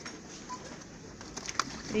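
Low shop background with a single sharp click of a hard plastic box about one and a half seconds in, as a small packaged ceramic box is handled on the shelf.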